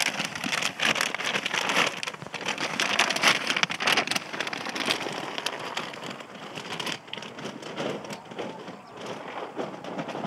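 Dry dog food (kibble) pouring out of a plastic bag into a cardboard box, a dense rattling patter loudest over the first four seconds, followed by a lighter, sparser crackle.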